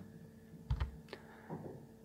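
A few faint clicks of computer keys being pressed, three or so in the middle of the pause, the first with a dull low thud.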